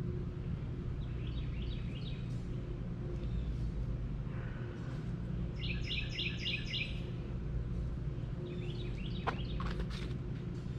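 A small bird chirping in short quick runs, faintly about a second in and more clearly near six seconds with about five notes, over a steady low hum.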